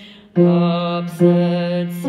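A solo voice singing a song phrase: a short breath, then two long held notes with a brief break and a hissed consonant between them.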